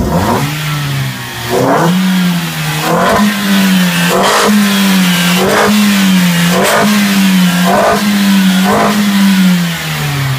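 Toyota Vios four-cylinder engine revved in quick throttle blips, about one a second, its pitch rising and falling with each. Every blip brings a brief rush of induction noise through an aftermarket chrome intake pipe and cone air filter.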